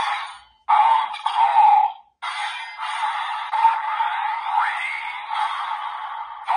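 Desire Driver toy belt playing its electronic sound effects and announcer calls through its small built-in speaker after the Claw Raise Buckle is set in it. The sound is tinny and narrow, in three bursts with short breaks, with rising electronic sweeps in the latter half.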